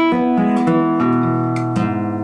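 Classical nylon-string guitar playing a short run of chords, each struck and left to ring. A new chord comes in about halfway through and another near the end.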